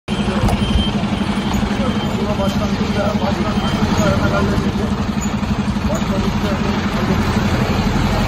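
Fire truck's diesel engine idling steadily, a fast even throb, with voices talking faintly in the background.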